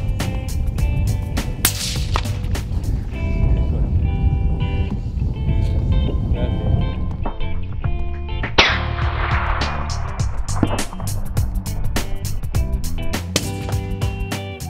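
Background music with a steady beat throughout. About eight and a half seconds in, a single .22-250 varmint rifle shot cracks and its report dies away over a second or more. A shorter sharp crack comes near two seconds in.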